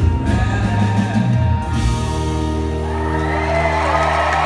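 Live band with acoustic guitars and drums playing the close of a song: about two seconds in it settles into a held final chord that rings on, and the audience starts cheering and whooping near the end.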